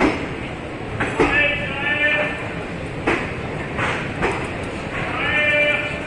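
Passenger train rolling slowly through a station with irregular clacks from its wheels over the rail joints, under a steady running rumble. Two drawn-out pitched calls, each about a second long, come through about a second in and near the end.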